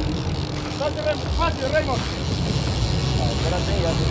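Sportfishing boat's engines running with a steady low rumble, with short bursts of voices calling out over it.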